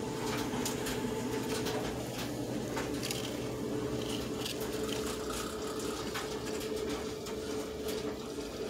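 Steady mechanical hum with one held tone over a low drone, and scattered light clicks and scrapes as a cardboard template is handled against a plastic headlight bucket.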